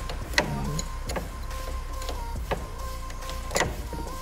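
A hand wrench working a bolt under a car, giving four sharp metallic clicks and knocks spaced a second or so apart, over a steady low hum.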